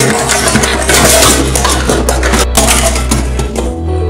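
Sound-effect explosion: a sudden, loud blast that starts at once out of silence and goes on as dense crackling and clattering debris over a low steady rumble, easing near the end into music.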